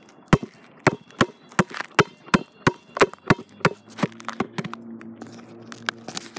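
Basketball dribbled on an outdoor hard court: sharp bounces about three a second. Past the middle the bounces grow lighter and a low steady hum comes in.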